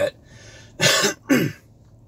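A man clearing his throat twice, in two short bursts about half a second apart.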